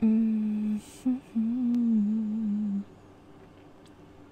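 A woman humming with closed lips: a held note of most of a second, a brief blip, then a longer hum that wavers gently in pitch.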